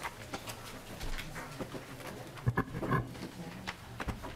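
Hearing-room background noise: scattered small clicks and rustles over a faint low hum, with a few louder muffled knocks about two and a half to three seconds in.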